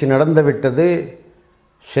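A man speaking in Tamil, then a short pause before he speaks again; no other sound.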